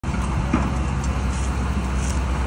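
Steady low rumble of a construction machine's engine running, with general outdoor work-site noise over it.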